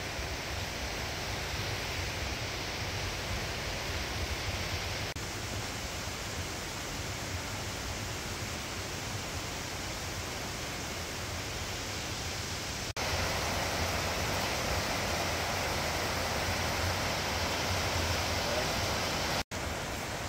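Rushing mountain creek: a steady wash of water over rocks, which gets louder and brighter about thirteen seconds in.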